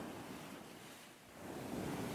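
Faint ocean waves and surf, a steady wash that fades about halfway through and swells back up.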